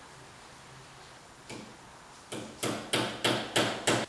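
Hammer tapping a screw extractor (easy out) into a drilled-out, snapped head stud in an LS3 engine: one sharp metal tap about a second and a half in, then six more strikes at about three a second.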